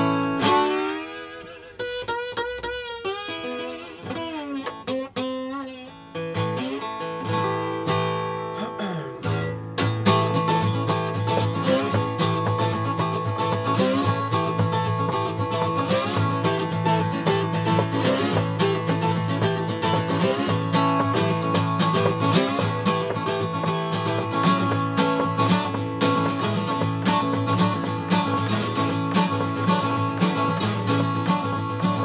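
Acoustic guitar played with a slide: the opening bars are sparse sliding, wavering notes, then about ten seconds in it settles into a steady strummed blues-country rhythm.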